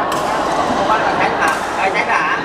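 Echoing chatter of many players in a large badminton hall, with two sharp racket-on-shuttlecock hits, one just after the start and one about a second and a half in.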